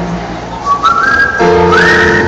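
Live pop concert music, with piano chords and high, pure held notes that slide up in pitch and then hold, about one second in and again near the end.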